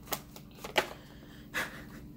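Tarot cards being shuffled by hand: a few separate soft card clicks about three-quarters of a second apart.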